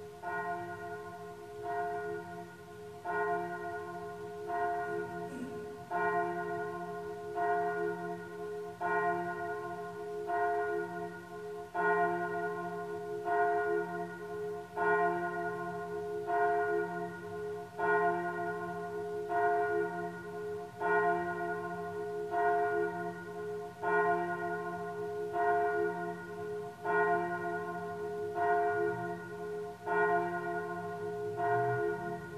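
A single church bell tolling steadily before Mass, the same note struck about once every second and a half, its hum ringing on between strokes. The strokes grow louder over roughly the first ten seconds, then stay even.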